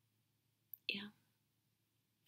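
Near silence with room tone, broken about a second in by a brief click and then a single soft, breathy "yeah" from a woman.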